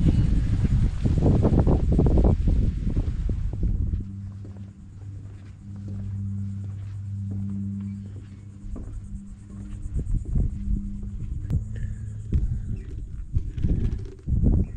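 Low rumbling noise, typical of wind on the microphone, for the first few seconds. Then a steady low hum that swells and fades slowly, with scattered light knocks on the wooden deck.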